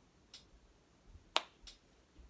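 Finger snaps: three short, sharp snaps, the loudest just past halfway with another close after it.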